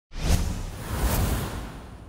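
Cinematic whoosh sound effects for an animated title logo: two sweeping whooshes less than a second apart over a deep rumble, fading out.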